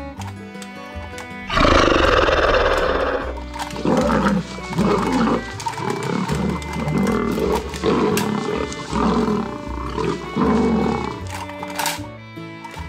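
A loud dinosaur roar starting about a second and a half in, followed by a run of shorter roars, over background music.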